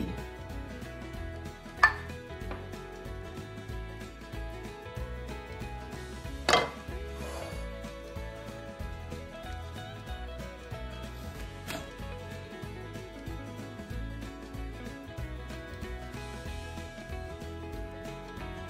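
Kitchen knocks and clinks of a ceramic bowl and a kitchen knife on a countertop and plastic cutting board, over background music; the sharpest knocks come about two seconds and six and a half seconds in, with a lighter one near twelve seconds.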